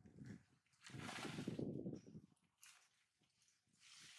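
Rustling, scuffling noise in bursts: one lasting about a second near the start, a short one in the middle, and another starting near the end.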